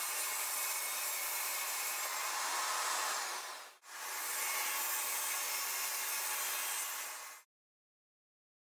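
Table saw running and cutting plywood: a steady, even saw noise. It breaks off for a moment just under four seconds in, resumes, then stops abruptly about a second before the end.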